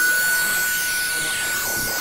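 Electronic title-animation sound effect: a single steady high whine held throughout, with glitchy digital crackle and static over it.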